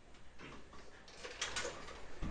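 Faint plastic clicks and rustling from a Nerf toy blaster being handled, bunched into a quick run of clicks in the second half.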